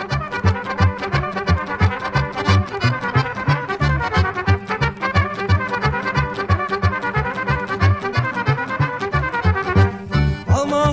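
Instrumental opening of a Romanian-language folk dance song played by a band with trumpets leading over accordions and guitars, carried by a quick, steady bass beat.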